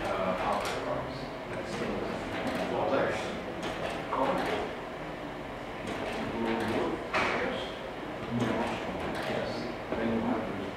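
Indistinct voices of several people talking in a room, with no clear words.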